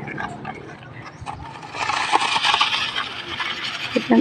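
Wooden rake dragged through unhusked rice grain spread out to dry on concrete: a dry rustling hiss of shifting grain for about two seconds in the second half, with scattered light clicks before it.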